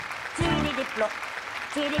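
Applause, with short bursts of voices and quiet music behind.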